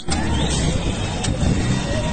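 Low, steady rumble of a moving motor vehicle's engine and road noise, with faint distant voices from a crowd.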